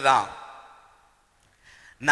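A man's amplified voice preaching: a drawn-out word falls in pitch and echoes away, then after a short pause a brief breath is drawn near the end.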